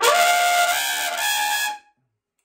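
Trumpet played with a throat growl: the uvula rattles at the back of the throat while the note sounds, laying a gritty rasp over it and giving a huge sound. One held note of nearly two seconds, cut off cleanly.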